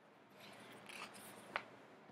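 Faint rustling of a picture book's paper pages being handled and turned, with a single sharp tap about one and a half seconds in.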